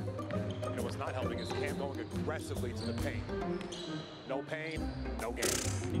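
A basketball being dribbled on a hardwood court, a run of repeated bounces over background music.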